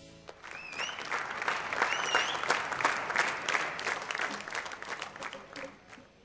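Studio audience clapping and cheering at the end of a song. Two short rising whistles come about half a second and two seconds in, and the clapping dies away near the end.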